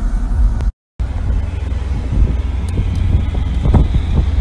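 Loud, steady low rumble of road and rolling noise with wind buffeting a phone microphone, broken by a short silent gap about a second in.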